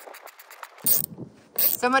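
A hand screwdriver fastening screws into a plastic electrical junction box: a few faint clicks, then one short, louder rasping scrape about a second in.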